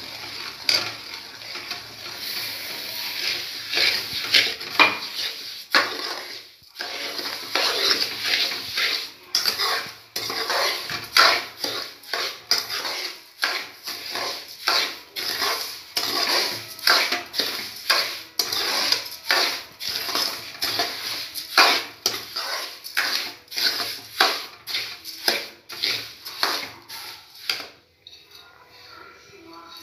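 Steel spoon stirring and scraping semolina roasting in ghee in a metal kadhai, in repeated strokes about twice a second, with a short pause about six seconds in.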